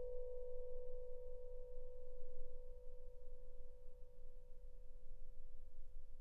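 Yamaha vibraphone's final chord ringing on: several steady pitches slowly die away, and one middle note outlasts the rest.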